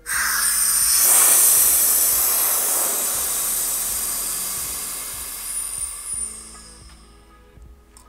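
Compressed air hissing out of a Tonisco B30 hot-tapping machine's drilling chamber as it is vented after its pressure test. The hiss starts suddenly, is loudest about a second in, then dies away over some six seconds as the chamber empties.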